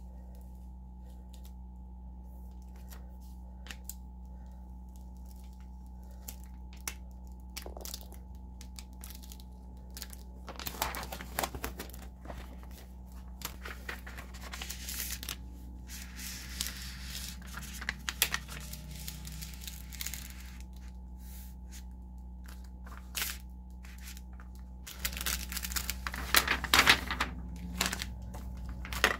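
Vinyl decal and transfer paper handled by hand: scattered rubbing and peeling noises as the transfer paper is laid on and smoothed down, with the loudest stretch of peeling near the end as the sheet comes off its backing.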